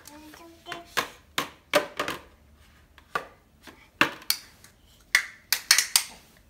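Irregular clacks and knocks of a baby banging and stirring toys in a plastic bucket: about a dozen sharp hits, coming faster near the end.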